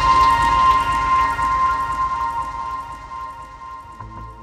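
Electronic music fading out at a transition in a DJ mix: the beat and bass drop away, leaving a held tone and a scatter of soft clicks. These die down gradually over the few seconds.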